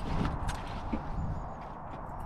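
Wind rumbling on the microphone, with a few light knocks in the first second as a ladder is handled and put into the back of a 4x4.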